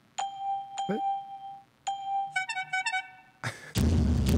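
Sound-effect bell dinging three times, then a quick run of chiming bell notes, celebrating a stock purchase. Just before the end, a sharp hit and a loud boom-like sound effect start.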